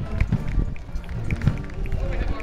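Military formation marching in step on pavement, their footfalls landing together in a steady beat about twice a second, with music and voices mixed in behind.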